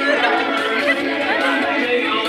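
Several voices talking over background music with held notes.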